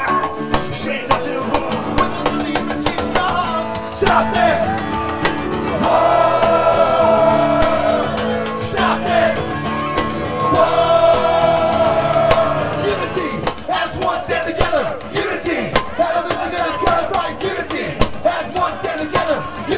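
Live acoustic guitars strumming a fast ska-punk rhythm, with voices singing along and a crowd joining in; two long held sung notes come about six and ten seconds in.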